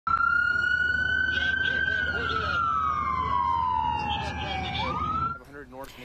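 Emergency vehicle siren in a slow wail. It holds a high pitch, glides slowly down for a few seconds, then sweeps quickly back up, and cuts off about five seconds in.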